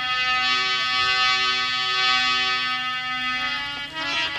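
Harmonium playing an instrumental interlude of held notes and chords that change every second or so.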